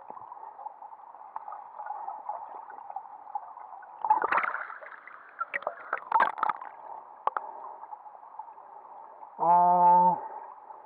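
Muffled underwater stream noise picked up by a submerged camera in a shallow, rocky stream, with splashing and knocks about four to six seconds in as the camera breaks the surface. A short, steady pitched hum sounds just before the end.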